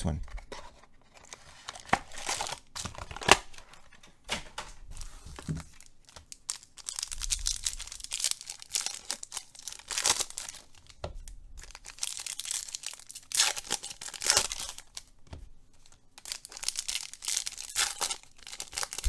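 Silver foil wrappers of Finest baseball card packs crinkling and being torn open by hand, in irregular bursts of rustling.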